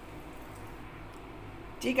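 Quiet room tone with a faint steady low hum, and a woman's voice starting near the end. The grinder is not heard running.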